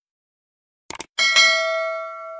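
A quick double mouse click, then a bell ding that rings on and fades over about a second and a half. These are the sound effects of a subscribe-button animation, with the click landing on the notification bell.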